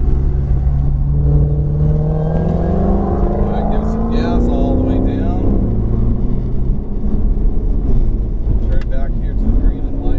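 Ferrari 488's twin-turbo V8 heard from inside the cabin, its pitch rising steadily as the car accelerates, dropping back a little past halfway, then climbing again near the end.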